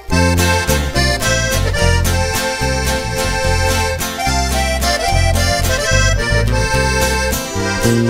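Live norteño band coming in suddenly at full volume with a song's instrumental intro: accordion playing the melody over guitar and a heavy bass line.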